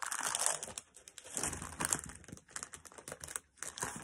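Thin plastic packaging bag crinkling as a pack of 12x12 glitter paper sheets is slid out of it. The rustling comes in irregular bursts, with short pauses about a second in and near three and a half seconds.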